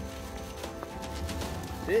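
Faint steady background music under a low rumble of wind on the microphone, with a few faint clicks; a man's voice calls "Hey" near the end.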